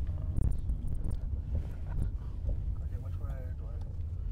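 Low rumble of a car on the move, heard from inside the cabin, with wind buffeting the microphone. A faint voice comes in briefly about three seconds in.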